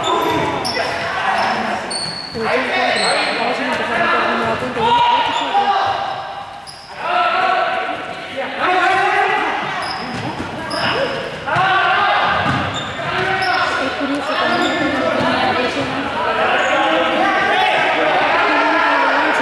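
Many players' voices calling and shouting in a reverberant sports hall, with frequent short, high squeaks of sports shoes on the court floor.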